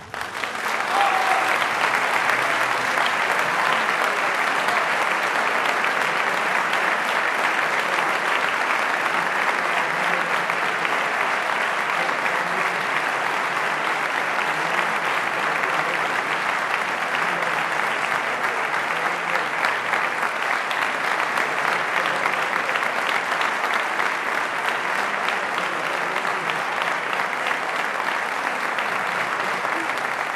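Audience applauding, a dense, steady clapping.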